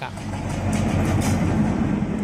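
Train running, a steady rumble with rail noise.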